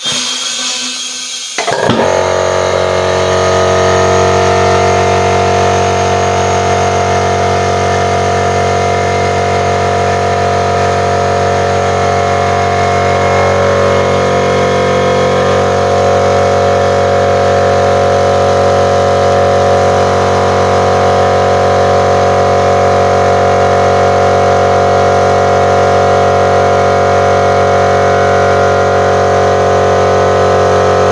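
Small electric mini air compressor running with a steady hum, reaching full running about two seconds in, as it pumps air through a hose straight into a tubeless tyre's valve stem with the valve core removed, to seat a stretched tyre's bead on a wide rim.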